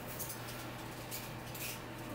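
Faint rustling and soft ticks of asparagus spears being handled and pulled from a bunch on a kitchen counter, over a steady low hum.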